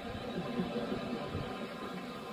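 Audience laughing at a stand-up comedian's punchline, heard over a radio broadcast.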